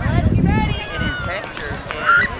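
Voices calling out on an outdoor playing field, with a low rumble on the microphone in the first second.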